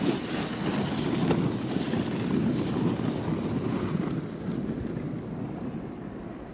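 Wind on the microphone, a steady rushing rumble that eases off over the last couple of seconds.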